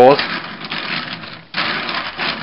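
Plastic wheels of a Transformers Movie Voyager Ratchet toy (Hummer H2 vehicle mode) rolling across a wooden surface with a rattling rumble. The rumble fades, then picks up again about one and a half seconds in.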